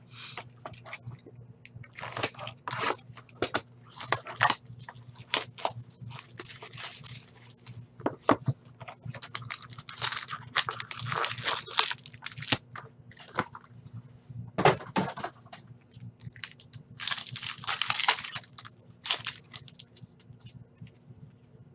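Crinkling and tearing of plastic wrap and foil card packs as a sealed hobby box of hockey cards is opened by hand, in irregular bursts, with a faint steady hum underneath.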